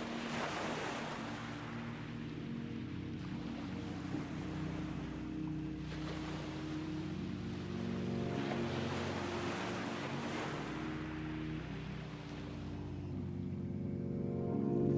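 Ocean surf washing up onto a sandy beach, swelling in several surges a few seconds apart, over a low, steady held drone of background music.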